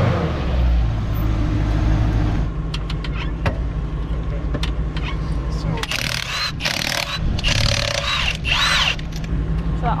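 A vehicle engine running steadily, loudest in the first couple of seconds. From about six seconds in, a cordless impact wrench fires in four short bursts, spinning lug nuts off a wheel.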